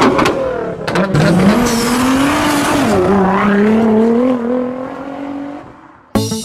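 Sports car engine revving: a few sharp pops from the exhaust at first, then the engine note climbs and holds, wavering up and down, before fading away near the end.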